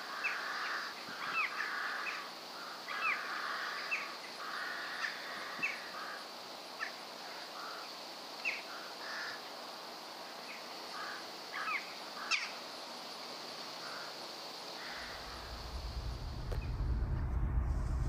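Crows cawing, short harsh calls several times in the first half, thinning out after about ten seconds, over a steady high hiss. A low rumble comes in near the end.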